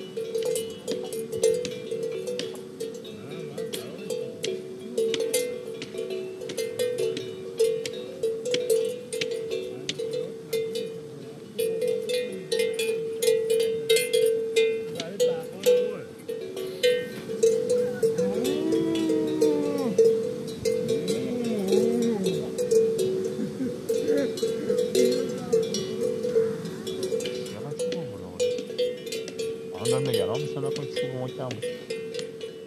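A bell on a grazing cow clanking steadily and unevenly as the animal moves and feeds. Past the middle, a cow moos twice in long, rising-and-falling calls.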